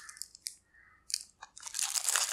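Faint crinkles and clicks of a cardboard soap box being handled: a few short crackles with quiet gaps between, then a soft rustle building near the end.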